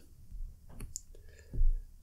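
Whiteboard marker tapping and scratching against the board while writing, a few faint clicks, with a louder knock about one and a half seconds in.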